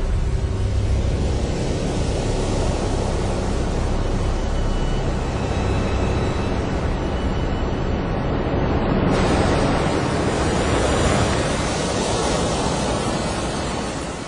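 Sea water splashing and surf breaking, a steady rushing noise that turns brighter and hissier about nine seconds in.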